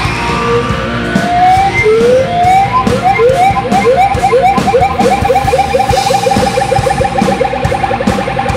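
Hardcore punk band playing live, loud. An electric guitar slides upward a few times, then plays a fast repeated note that bends up on each pick, about five a second, over the drums.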